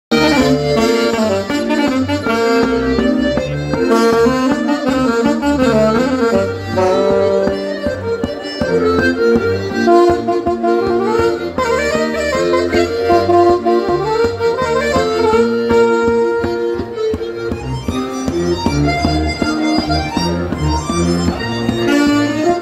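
Saxophone and diatonic button accordion playing a lively Breton fest-noz dance tune together, the melody over the accordion's pulsing bass and chords.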